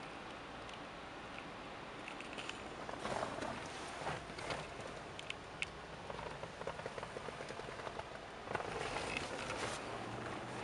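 Faint rustling with scattered small clicks and crackles, a little busier about three seconds in and again near the end.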